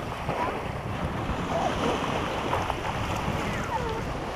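Wind buffeting the camera microphone, a gusty rumble, over the wash of small waves breaking on the beach.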